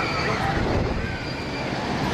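Steady rumble of a roller coaster train running on its steel track, with people's voices talking faintly in the background.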